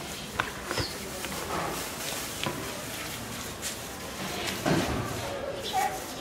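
Background voices with scattered clicks and knocks, the loudest a thud near the five-second mark.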